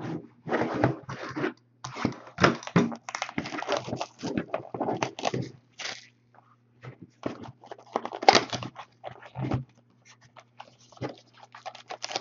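Clear plastic shrink-wrap being torn off a trading-card box and crumpled by hand, in quick, irregular crinkling bursts, over a faint steady low hum.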